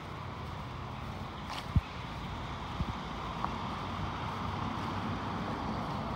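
Steady outdoor background noise with wind on the microphone, and a brief low thump just under two seconds in.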